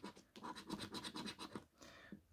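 Faint rapid scraping of a coin rubbing the scratch-off coating from a paper scratchcard, in quick repeated strokes of roughly eight a second. It stops about a second and a half in.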